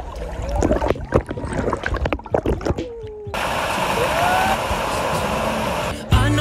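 Pool water splashing and sloshing close to the microphone in irregular strokes. About three seconds in it cuts abruptly to a steady rushing noise.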